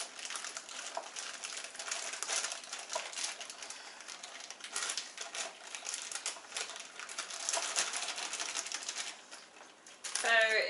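Plastic raisin bag crinkling while raisins are shaken out into a measuring cup, a dense uneven crackle and patter that dies down near the end.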